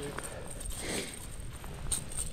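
Wind buffeting the microphone as a steady low rumble, with a few faint clicks and knocks over it.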